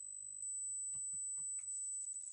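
A steady high-pitched electronic whine, the audio static troubling the stream, growing louder about half a second in over a faint low hum. Faint clicks and rustles come from a backpack being handled.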